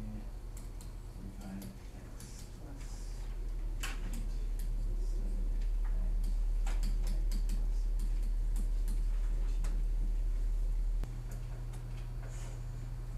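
Interactive-whiteboard pen tapping and clicking against the board in an irregular run of sharp ticks as writing strokes are made. Underneath runs a low hum that grows louder a few seconds in and cuts off suddenly near the end.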